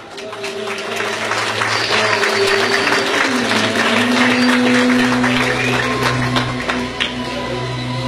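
An audience applauding a recited poem, the clapping swelling about a second in and easing off in the second half. Steady held musical notes sound underneath, shifting pitch about halfway through.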